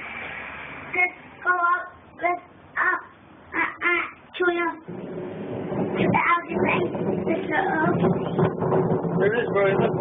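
A young child's voice in a string of short, high-pitched sung or called syllables, followed from about five seconds in by continuous talking.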